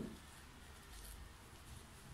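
Loose potting soil poured from a pot into a coconut-shell planter: a soft thud right at the start as a clump lands, then faint sounds of soil falling.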